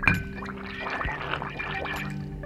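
A glass bottle's mouth clinks down onto a ceramic plate in shallow water, then air gurgles and bubbles out through the water at the bottle's mouth for about a second and a half.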